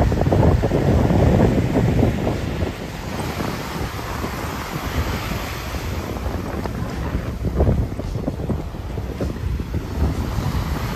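Wind buffeting the microphone, strongest in the first couple of seconds and in a gust a little past the middle, over the steady wash of small waves breaking on a sandy shore.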